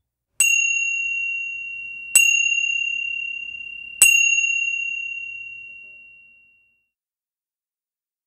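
A chime struck three times, about two seconds apart, each strike ringing on in a clear high tone that carries over into the next. The ringing fades out a couple of seconds after the third strike. The three chimes mark the close of the 15-minute session.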